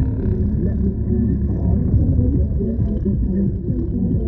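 Car driving along a road, a steady low rumble.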